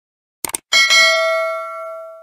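A short click about half a second in, then a notification-bell chime that rings out with several clear tones and slowly fades: the sound effect of a subscribe-button animation's bell being clicked.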